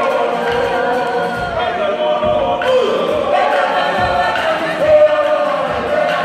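A Māori performance group of men and women singing together as a choir, with low thumps about once a second.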